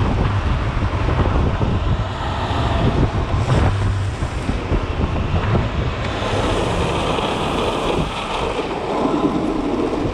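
Wind buffeting an action-camera microphone at speed, over the continuous roar of longboard wheels rolling on asphalt during a fast downhill run.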